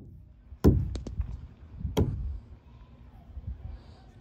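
Two sharp thumps about a second and a half apart, with a few lighter knocks between them.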